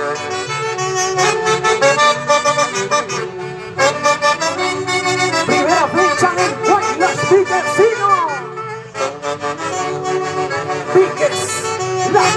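Folk orchestra led by saxophones playing a lively huaylarsh dance tune in sustained melodic phrases, with short breaks between phrases.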